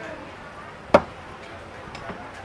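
A single cleaver chop through grilled pork rib onto a thick round wooden chopping board: one sharp, loud whack about a second in.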